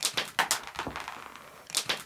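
Small dry dog treats just fired from a handheld treat-launcher gun scattering and skittering across a hard floor, mixed with a small dog's claws scrambling after them: a quick run of light irregular clicks, densest in the first half-second and then thinning out.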